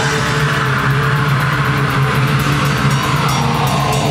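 Swedish black metal band playing live: a wall of heavily distorted guitars over fast, steady drumming.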